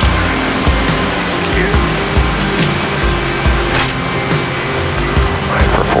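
Cockpit noise of the Super Guppy Turbine's four Allison 501-D22C turboprops at takeoff power during climb-out, a loud steady drone with held propeller tones, while the landing gear retracts.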